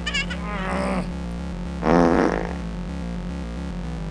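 Cartoon creature cries over background music: a falling squeal in the first second, then a louder, longer cry about two seconds in.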